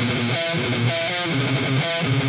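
Distorted electric guitar playing a thrash metal riff on its own, with almost nothing in the bass range under it.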